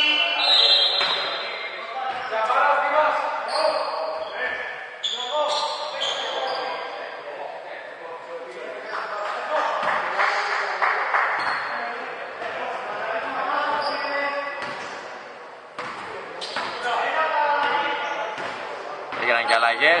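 Basketball bouncing on a hardwood gym floor, with men's voices calling out across the court and echoing in the large hall.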